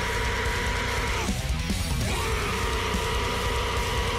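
Japanese idol metal song playing: heavy drums and bass under two long held notes, the first ending about a second in and the next starting just past halfway.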